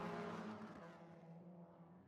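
A TCR touring car's engine running at a steady pitch, fading away over about two seconds as the car moves off into the distance.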